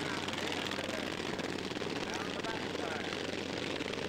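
Racing lawn mowers' governed single-cylinder engines running steadily as they lap the track, a dense, rapid rattle of firing pulses.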